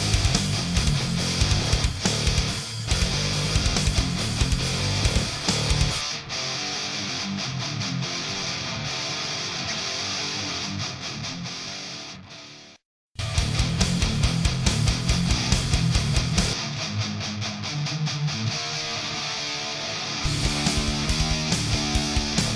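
Heavy-metal track in a full mix: a high-gain distorted electric guitar, a Schecter Sun Valley FR Shredder through a Mesa amp, playing chugging riffs over drums and bass. About six seconds in the track thins out. It fades to a brief complete break a little past halfway, then comes back in at full weight.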